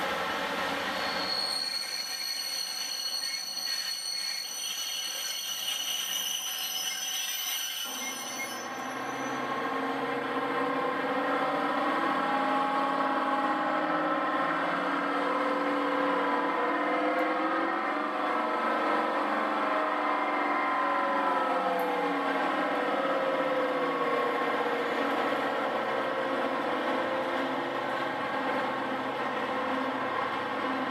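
Class 55 Deltic diesel locomotive with its two Napier Deltic engines running as it hauls a train of tank wagons slowly past. High wheel squeal rings over the first several seconds. From about eight seconds in the engine note grows louder and fuller, its pitch rising and falling.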